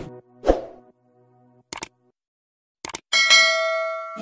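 Sound effects from a video-editing app's end card. There is a short hit about half a second in and two quick clicks, then a bright ringing chime that starts about three seconds in and slowly fades.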